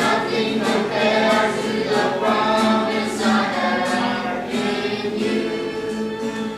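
Youth choir of mixed young voices singing a worship song together, the sung notes held and changing every half second or so.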